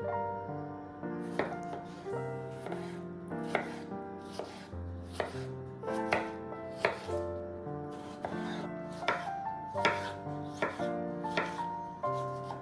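Kitchen knife slicing tomatoes on a wooden cutting board: sharp knocks of the blade through the fruit onto the board, about once a second and unevenly spaced. Soft background music plays underneath.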